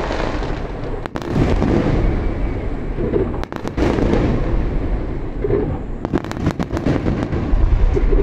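Aerial fireworks bursting one after another: a continuous deep booming with clusters of sharp crackling bangs.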